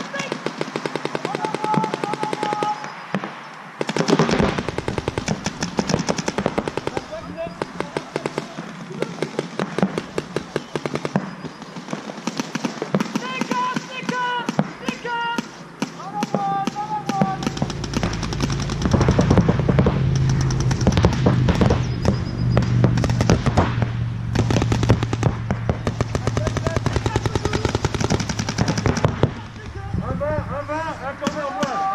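Paintball markers firing rapid strings of shots across the field, with players' shouts over them. A low steady hum comes in a little past halfway.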